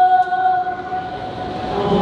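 Voices holding one sustained chanted note, which fades shortly after the start. A rushing swell of noise then builds toward the end.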